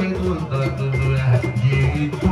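Live band music played through loudspeakers, with bass guitar and guitar, and a man singing into a microphone over it.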